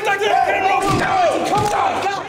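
Several men shouting and yelling over one another, loud and without clear words.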